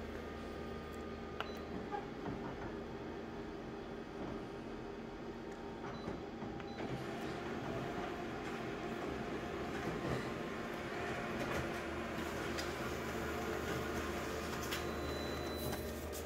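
Office multifunction colour copier running a copy job, a steady mechanical whir with a few faint ticks. The sound grows fuller about seven seconds in as the page goes through.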